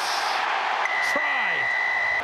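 Stadium crowd noise with a referee's whistle: one long, steady, high blast starting a little under a second in and held to the end.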